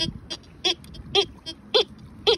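Tianxun TX-850 metal detector sounding its target tone as the coil sweeps over buried metal: four short beeps, about one every half second, each sliding up and back down in pitch. The screen reads in the high 70s, a high target ID that the searcher takes for a modern coin.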